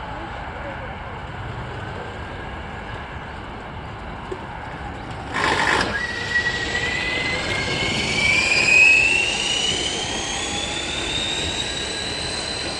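A vehicle going by over steady background noise. There is a loud rush about five seconds in, then a motor whine that rises steadily in pitch to the end, as in a vehicle gathering speed.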